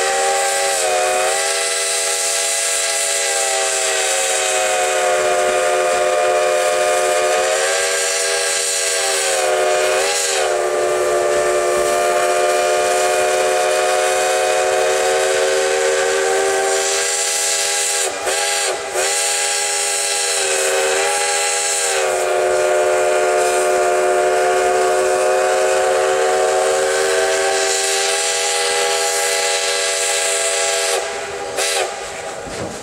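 Steam locomotive's chime whistle blown long and loud, several notes sounding together over a hiss of steam. Its pitch sags and wavers briefly about ten seconds in, and again at around eighteen to twenty-two seconds.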